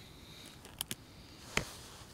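Paper notebook pages being handled and turned by hand: a couple of short, soft clicks, the loudest about a second and a half in.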